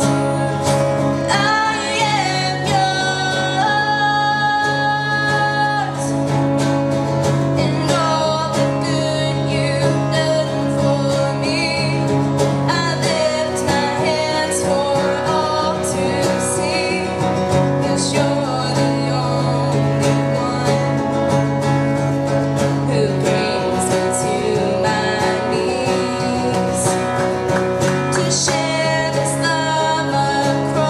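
A girl singing a song while strumming an acoustic guitar.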